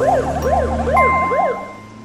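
Ambulance siren sweeping rapidly up and down, about two sweeps a second, over a low vehicle rumble. A steady high tone joins about halfway, and the siren stops about a second and a half in, leaving the sound to fade.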